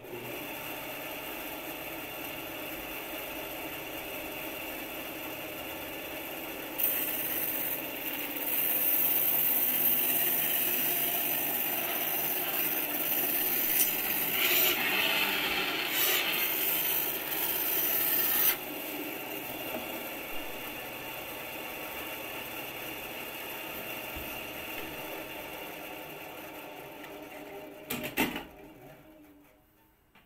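A power saw runs steadily, then cuts through a sheet of foam board for about ten seconds, louder and hissier during the cut. It then runs free again and winds down near the end.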